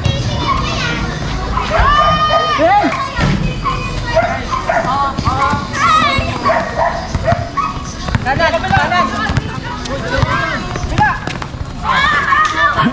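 Players and onlookers shouting and calling out to each other during a pickup basketball game, with one long held yell about two seconds in.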